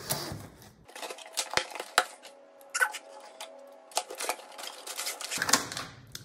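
Packaging in an opened shipping box being handled and unpacked: irregular crinkling with many sharp clicks and taps, the loudest about two seconds in and just before the end.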